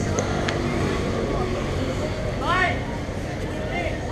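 Street traffic on a busy roadside: a steady low rumble of passing vehicles, with one brief voice rising and falling about two and a half seconds in.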